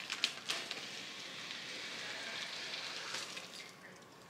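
Cardboard packaging handled during unboxing: a few sharp clicks and knocks, then a steady scraping rustle for about three seconds as a boxed item is slid out of a cardboard shipping carton.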